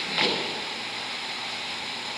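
A pause between spoken sentences: a steady background hiss of the room and recording, with a brief soft sound just after the start.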